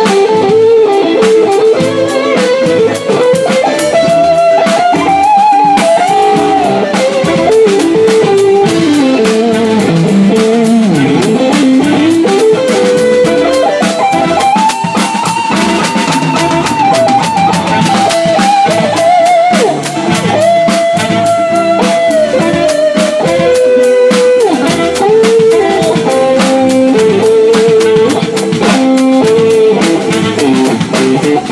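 Live band playing: electric guitars, bass and drum kit, with a lead melody that wavers in pitch with vibrato over them.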